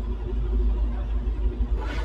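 A steady low rumble with no clear events, in a pause in the speech.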